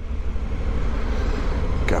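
Motorcycle engine idling with a steady low rumble.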